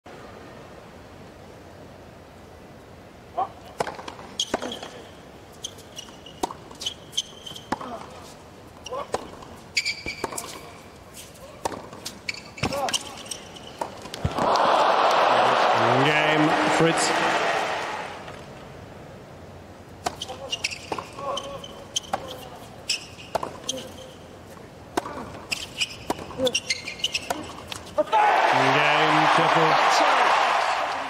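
Two tennis rallies on a hard court: a run of sharp racket strikes on the ball, each rally ending in a burst of crowd cheering and applause with shouts. The second burst of cheering starts near the end.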